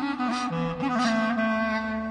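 Background music: a wind instrument holding long, steady notes over a lower accompanying line.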